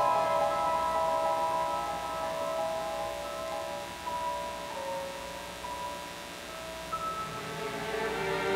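Solo piano playing soft, sparse, sustained notes that ring and fade under the pedal, with a new note entering every second or so and the loudness slowly dropping through the passage.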